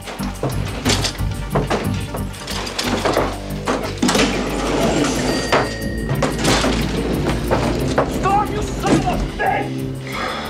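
Action-film soundtrack: a tense music score over a low drone, with repeated knocks and thumps from elevator doors and a gurney, and a man's strained grunts of effort. A short steady high tone sounds a little past the middle.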